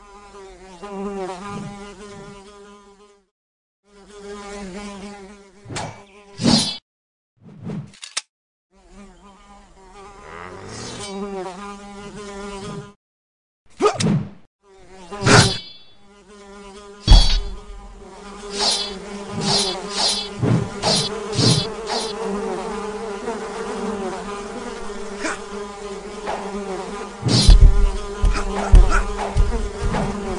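Housefly buzzing: a wavering drone that breaks off and starts again several times. Over it come many sharp swishes and strikes of a sword slashing at the fly, the loudest about halfway through and near the end. These are sound effects from an animated film's soundtrack.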